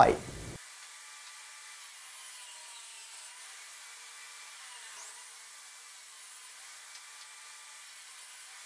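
Table saw running and cutting a wooden board, heard faint and thin with no bass.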